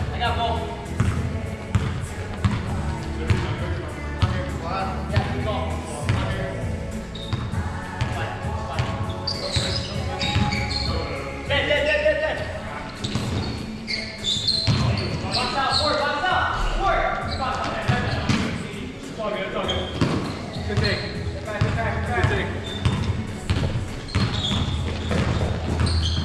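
A basketball bouncing repeatedly on a hardwood gym floor as it is dribbled, echoing in the large hall, with players' voices calling out over it.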